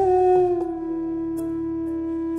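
Hindustani classical instrumental music in raga Bhoopali: a melody instrument holds one long steady note after small ornamental bends in pitch.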